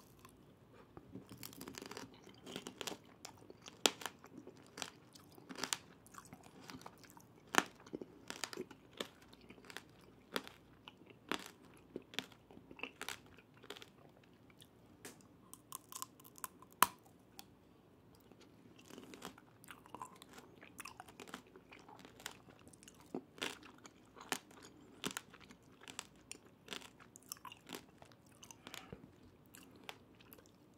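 Close-miked biting and chewing of tanghulu, candied hawthorn berries on a skewer: the hard sugar shell cracks in irregular sharp crunches, with chewing between them.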